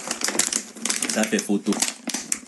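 Rapid, irregular crackling clicks close to the microphone, like something being handled or crunched, with a voice speaking briefly in the second half.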